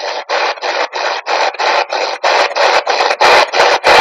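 SB-11 spirit box sweeping through radio frequencies: a steady run of choppy static bursts, about five a second.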